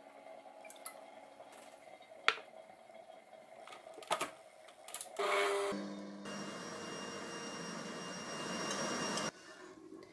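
Bosch stand mixer running, its wire whisk beating egg whites stiff in a steel bowl while powdered sugar is added. It starts about five seconds in and stops suddenly near the end. Before that there is only a faint hum with a few sharp knocks.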